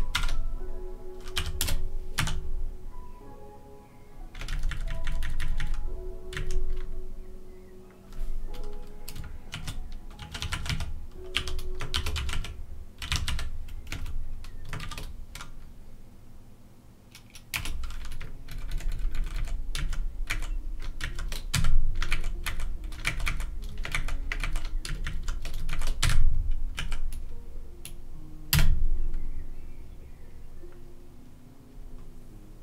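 Typing on a computer keyboard in irregular bursts of quick keystrokes, with a lull about halfway through, over quiet background music.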